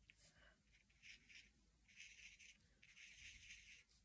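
Faint scratching of an alcohol marker's tip on watercolour card, in several short strokes with the longest near the end, as dots are coloured in.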